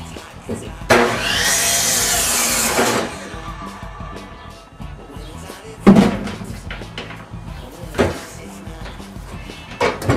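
A power saw runs for about two seconds, its pitch rising and then falling as it cuts through an aspen burl log. It is followed by a loud knock about six seconds in and a second, lighter knock about two seconds later.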